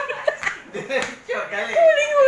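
Several people talking and laughing in a room, with a few sharp slaps cutting through, the first right at the start and others about half a second and a second in.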